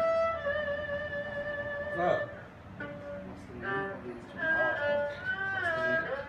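A bowed string instrument playing a slow melody: a long held note first, then shorter notes that slide and bend in pitch.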